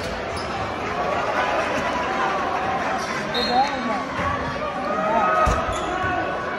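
A basketball bouncing on a hardwood gym floor during play, a few thumps heard through the voices of players and spectators in a large gymnasium.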